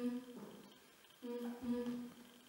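A voice humming a low, steady, chant-like note: a short held note at the start, a breathy pause, then the same note held again through the second half.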